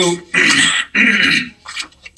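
A man clearing his throat three times in quick succession, each about half a second long, with a shorter, fainter one near the end.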